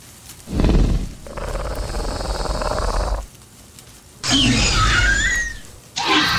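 Velociraptor sound effect: a low, rough growl lasting about two and a half seconds, then after a short pause a shrill screech that glides down in pitch.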